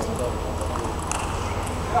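Table tennis rally: the ball clicks sharply against bats and table a few times at irregular intervals, over a low murmur of spectators in the hall.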